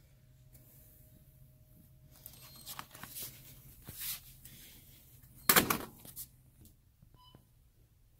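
Handling of small cardboard toothpaste boxes and a wire shopping cart: scattered faint rustles and light knocks, with one loud short knock or rustle about five and a half seconds in, over a steady low hum.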